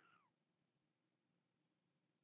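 Near silence. The faint tail of a woman's voice fades out with a falling pitch right at the start.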